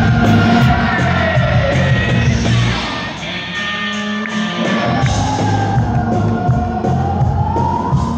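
New wave rock band playing live, with bass, drums and guitar under a singer's long held notes without words. One note slides down in the first half, and another climbs near the end.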